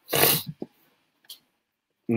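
A man's short, noisy breath between sentences, followed by a couple of faint clicks.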